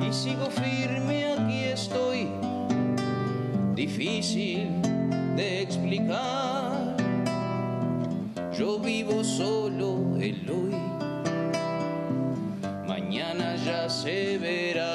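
Nylon-string classical guitar played in chords under a man's voice singing, with long held notes that waver in vibrato several times.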